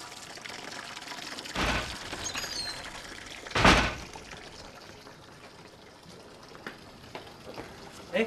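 Water splashing at an outdoor tap and basin, with two louder splashes, about one and a half and three and a half seconds in, the second the louder, over a steady wash of water.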